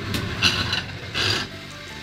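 Toy slot machine's reels spinning after a lever pull: a mechanical whirring rattle that gets quieter about one and a half seconds in.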